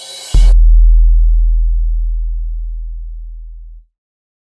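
Closing music sting: a single deep electronic bass tone comes in loud about a third of a second in and fades slowly over some three seconds before cutting off, after a brief tail of background music.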